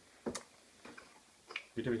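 A few sharp plastic clicks and taps from a toddler handling a plastic sippy cup, the loudest about a third of a second in, followed by fainter ticks; a voice starts speaking near the end.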